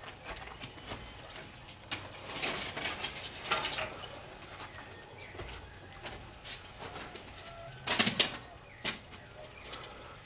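Footsteps and scuffs on loose rubble and broken block, with a loud cluster of crunching steps about eight seconds in. A bird calls faintly in the background.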